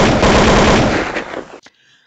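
Loud intro sound effect: a sudden burst of dense, rapid rattling noise that starts sharply and fades out over about a second and a half.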